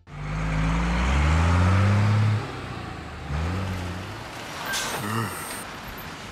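Cartoon truck engine sound effect accelerating in rising sweeps, easing off after about two and a half seconds, then a short hiss about five seconds in as the truck stops.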